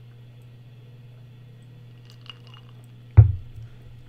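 A man drinking from a glass, with faint small swallowing and lip sounds, then setting the glass down on the desk with one sudden loud thud about three seconds in, over a steady low hum.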